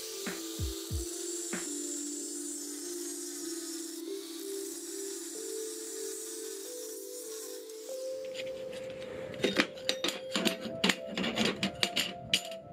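Angle grinder with a cut-off disc cutting steel flat bar, a steady high grinding hiss, over background music. From about nine seconds in, cut steel strips clink together sharply as they are handled.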